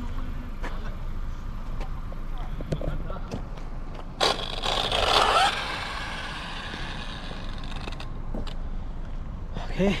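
Arrma Big Rock RC car's brushless electric motor whining up briefly with tyre noise about four seconds in, a short rising burst over a steady outdoor rumble.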